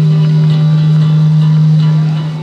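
Acoustic guitar accompaniment under a male singer holding one long, steady low note at the end of a sung line.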